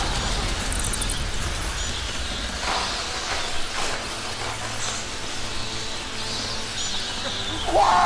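Film soundtrack of tense score and action sound effects: a dense rushing noise with a few sharp hits, and a low steady drone setting in about halfway.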